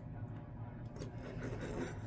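Soft rubbing and rustling, like cloth being brushed, with a couple of louder scraping smears about halfway through and near the end, over a steady low hum.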